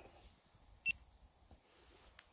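A single short electronic beep a little under a second in, over an otherwise very quiet background.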